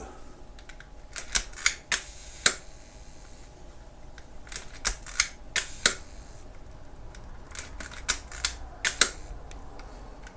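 Leica M2 rangefinder's mechanism being worked by hand with the back open: sharp mechanical clicks of the shutter and film advance in three clusters, a short ratcheting rasp about two seconds in.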